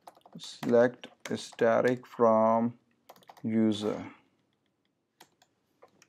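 Typing on a computer keyboard, keystrokes coming in short runs, with a man's voice saying a few short words in between.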